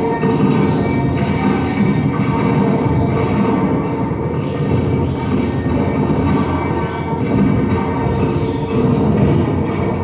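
Live industrial noise music played on electronics: a dense, continuous rumbling drone with several held tones layered over it and no steady beat.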